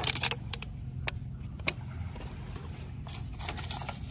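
Plastic litter clicking and clattering against beach stones as a hand picks through it: a string of sharp, irregular clicks over a steady low rumble.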